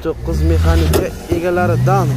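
Men's voices talking, with a sharp click about a second in and a low rumble under the first second.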